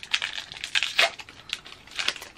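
Pokémon TCG booster pack's foil wrapper crinkling as it is torn open and pulled apart by hand: a run of irregular crackles.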